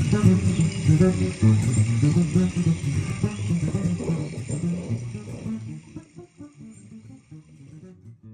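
Acoustic guitar played as an unhurried picked improvisation that slowly dies away over the last few seconds. Behind it runs a steady rush of recorded river water with faint birdsong.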